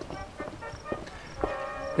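A quiet pause holding a few faint, soft knocks, then faint background music with a held chord from about halfway through.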